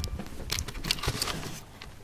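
Handling noise from a handheld camera being moved: a few sharp clicks and rustles in the first second and a half.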